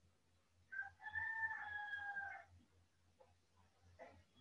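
Faint pitched animal call: a short note, then one long, slightly falling held note lasting about a second and a half.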